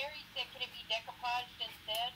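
Speech only: a high-pitched voice talking in short broken phrases.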